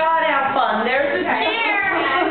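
High-pitched, excited human voices squealing and calling out without clear words, the pitch gliding up and down.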